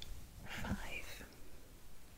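A woman whispering a short word, soft and breathy, about half a second in.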